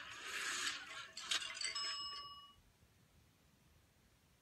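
A television sound effect: a rush of hiss, then a bright chime-like ring of a few high tones that fades away about two and a half seconds in. It is heard through the TV's speaker.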